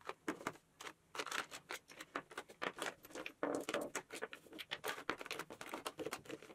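Makeup tubes, bottles and compacts being picked up and set down on a tabletop: a quiet, irregular run of light clicks and taps.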